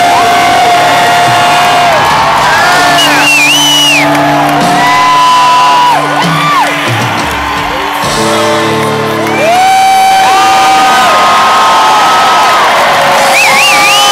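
Live rock band holding long sustained chords at the close of a song, loud through the audience recording, with the crowd whooping and cheering over it.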